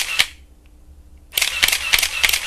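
Camera shutter sound effect: rapid runs of shutter clicks, about five a second. One run stops shortly after the start, and another begins about a second and a half in.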